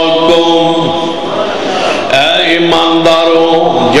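A man's voice chanting in long, held melodic lines through a microphone, softening and sliding in pitch briefly about midway before resuming.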